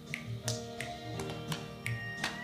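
Hand-clapping game: two people's palms and hands slapping together in a quick, even rhythm, about three claps a second, over a song playing from a TV.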